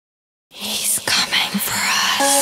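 Whispered voice sample with breathy, hissing noise sweeps, starting about half a second in after silence: the eerie intro of a Halloween trap track triggered from a Novation Launchpad.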